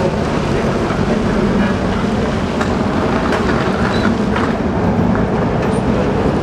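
Street traffic noise: nearby motor vehicle engines running with a steady rumble and road noise.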